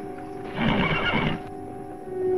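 A horse whinnies once, starting about half a second in and lasting under a second, over sustained orchestral music.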